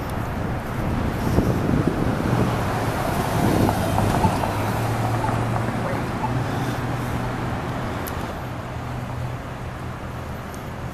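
City street traffic: cars passing, with a steady low engine hum underneath. The passing traffic is loudest in the first half and fades off toward the end.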